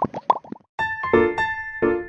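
Cartoon bubble sound effects: a quick run of short rising plops that stops just over half a second in. After a brief gap, bright keyboard music starts with repeated chords.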